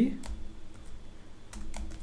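Computer keyboard keystrokes: a handful of separate, irregularly spaced key clicks as a terminal command is typed.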